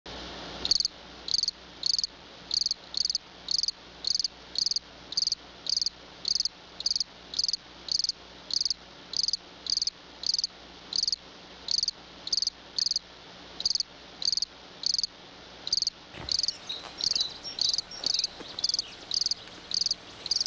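A cricket chirping in a steady, even rhythm, about one and a half high-pitched chirps a second. In the last few seconds fainter chirps fall between the main ones.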